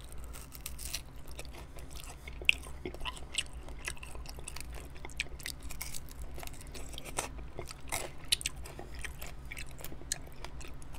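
Close-miked biting and chewing of a medium buffalo-sauce chicken wing: a steady run of short, wet clicks and crunches, with two louder crunches, one a couple of seconds in and one near the end.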